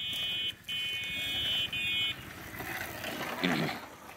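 A steady high-pitched buzzing tone of several notes together, which breaks off briefly twice and stops about two seconds in. A short voice follows near the end.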